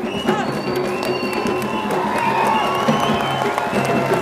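A studio audience cheering and applauding over held notes of music, with high shouts and whoops rising above the clapping.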